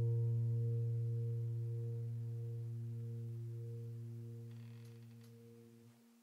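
Background piano music's final low note, held with its overtones and fading slowly away to nothing.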